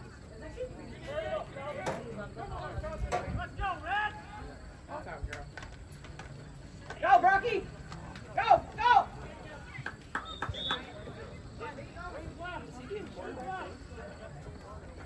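Voices at a youth football game: background chatter and calls from the sideline, with a few loud shouts about seven to nine seconds in while a play is run.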